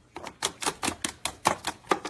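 Quick, irregular plastic clicks and taps, about five a second, as a white-bellied caique pecks and bites at a cable lying on hard plastic game cases.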